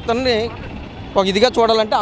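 A man talking, with a pause of under a second filled by the steady hum of street traffic.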